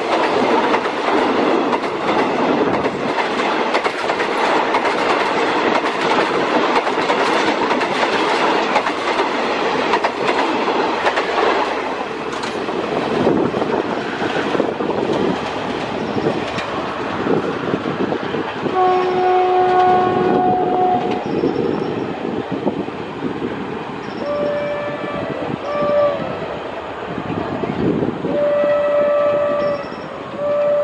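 A diesel-hauled passenger train's coaches running close by: wheel and carriage rumble with clicking over the rail joints for the first dozen seconds, then fading as the train draws away. From about halfway through, a train horn sounds several steady blasts of a second or two each, the first lower in pitch than the rest.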